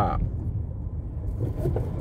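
Low, steady rumble of a car heard from inside its cabin: engine and road noise.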